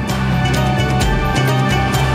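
Background music score: low sustained bass notes that shift in pitch, under a steady beat of percussion hits.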